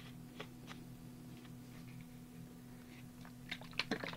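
A few faint, short clicks and taps from a plastic bottle of acrylic matte medium and its cap being handled, a couple in the first second and a cluster near the end, over a steady low electrical hum.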